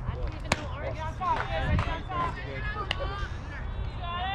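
Several voices talking and calling out, with two sharp knocks, one about half a second in and one about three seconds in.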